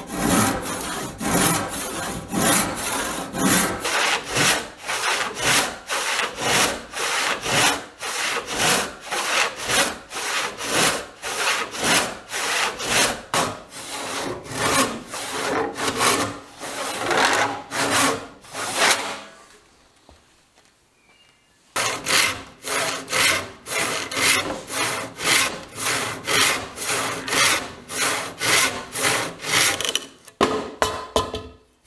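Hand saw cutting through a thick wooden board, in steady rasping strokes at about two a second. The sawing stops for about two seconds roughly two-thirds of the way through, then carries on at the same pace.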